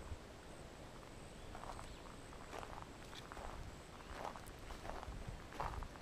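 Faint footsteps of a hiker walking on a sandy forest path covered in pine needles: soft, irregular steps roughly once a second.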